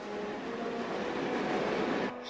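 Underground train running through a tunnel: a steady rushing rail noise that swells toward the end.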